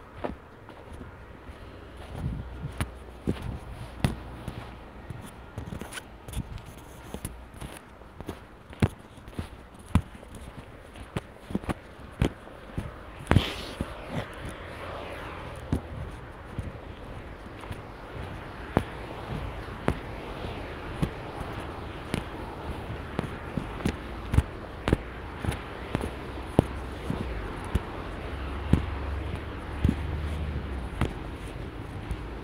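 Footsteps crunching over packed snow and slush at a walking pace, sharp steps about one to two a second. About halfway through comes one louder crack with a brief hiss, and a low rumble rises near the end.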